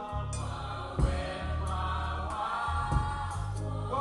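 Gospel song with a choir singing over a band and a live drum kit. A cymbal crash rings out just after the start and a loud drum hit lands about a second in.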